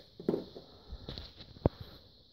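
A few light knocks and handling noises, with one sharp click about two-thirds of the way through, over a faint steady hiss.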